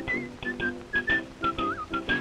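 Early sound-cartoon score: a whistled tune over a small band's chords and a brisk, clipped beat, with a quick up-and-down flourish in the whistle near the end.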